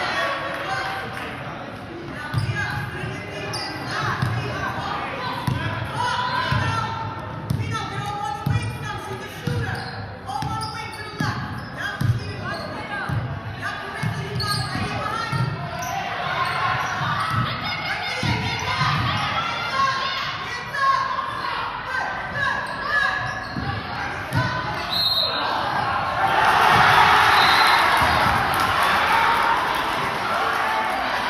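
A basketball being dribbled on a hardwood gym floor, about one or two bounces a second, echoing in the hall, with voices of players and spectators throughout. Near the end there is a louder stretch of noise.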